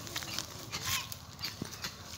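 Footsteps crunching on dry leaf litter and twigs, a run of short irregular crackles.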